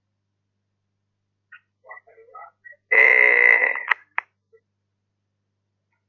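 Call-compressed male voice over a phone video call: after near silence, about three seconds in, a single drawn-out hesitation sound of about a second, the pause of someone thinking before answering. Two short clicks follow it.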